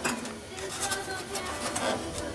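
Clicks and light rubbing of sheet metal as a freed radiator support panel, its spot welds just drilled out, is flexed back and forth by hand.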